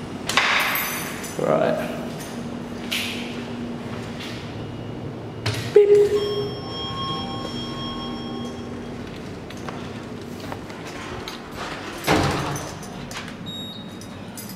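Lift doors and a building corridor. A sharp knock about six seconds in is followed by a steady ringing tone lasting a few seconds, and the lift doors slide near the end.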